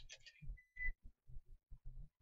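Faint computer keyboard and mouse clicks, a quick run of soft taps about four a second.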